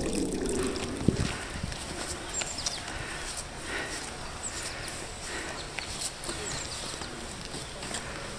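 Footsteps walking on a paved path: scattered light knocks over a steady outdoor background hiss, with a few faint high chirps.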